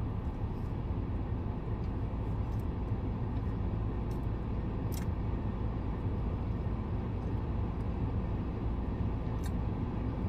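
Steady low rumble of a stationary car's interior, with a few faint clicks about four, five and nine and a half seconds in.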